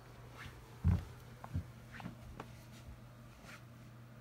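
Handling noise from a phone camera being moved: a soft thump about a second in, a smaller one after it, and a few light clicks and taps over a steady low hum.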